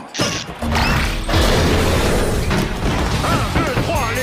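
Soundtrack of an animated monster-truck wrestling cartoon: a loud, dense din of mechanical clanking and crashing.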